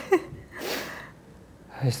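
A person's breathy gasp lasting about half a second, just after a brief voiced sound. Speech picks up again near the end.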